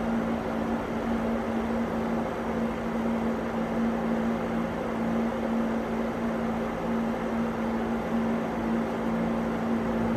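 Thermomatic Desidrat Exclusive dehumidifier running: a steady low hum with an even rush of air from its fan.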